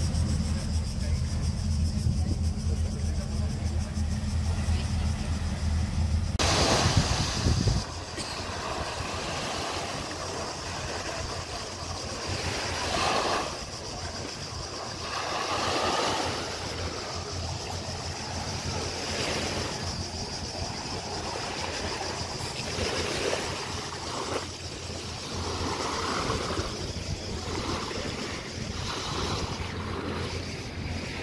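Small waves washing onto a sand and pebble beach, with the voices of bathers in the background. For the first six or seven seconds a loud low rumble covers the sound, then stops abruptly.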